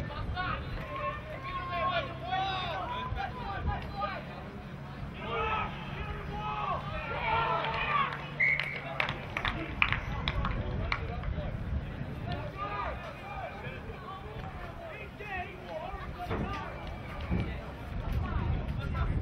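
Voices of players and spectators calling and shouting across a rugby league field, several at once, over a low outdoor rumble.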